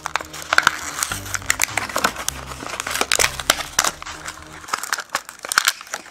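Cardboard backing and plastic blister packaging of a die-cast toy car crinkling and crackling as hands peel the package open, in many quick irregular crackles.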